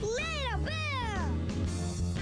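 Jazzy, swing-style children's theme-song music. In the first second and a half come two meow-like calls, each rising and then falling in pitch.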